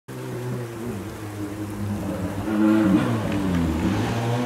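Ford Sierra RS Cosworth rally car's turbocharged four-cylinder engine approaching unseen, revving up and dropping back through gear changes, growing louder about halfway through.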